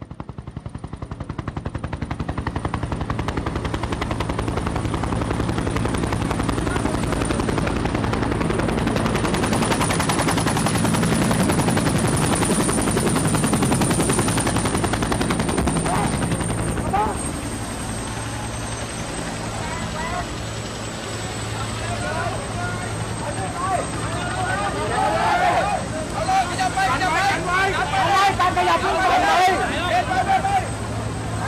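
Helicopter flying over with its rotor beating rapidly, growing louder over the first dozen seconds and fading away after about seventeen seconds. People's voices take over near the end.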